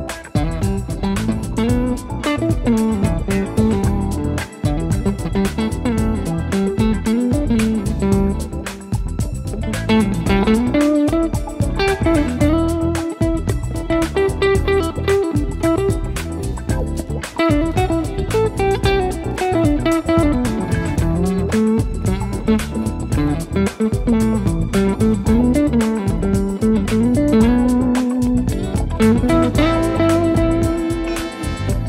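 Electric guitar playing a lead melody with slides and bends over a prerecorded backing track with bass, the track carrying everything but the lead guitar.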